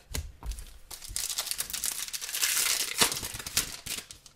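A foil trading-card pack being torn open: its foil wrapper crinkles and tears in a dense run of crackles from about a second in until near the end. A few soft knocks come first as cards are handled.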